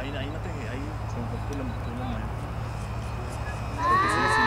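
Faint voices of people talking in the background over a steady low hum, with a louder, high-pitched voice breaking in near the end.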